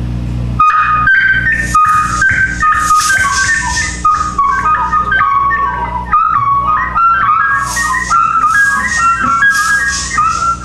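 Experimental noise band playing live: a high, whistle-like electronic melody of short notes stepping up and down over a steady low drone, with a few sharp cracks in the first few seconds.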